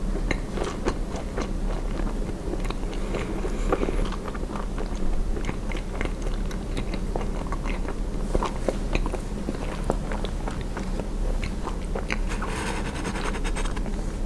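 Close-miked mouth chewing a soft marshmallow with the lips closed: a run of small, wet, sticky clicks and smacks. Near the end a short handling rustle as another marshmallow is picked up, all over a steady low hum.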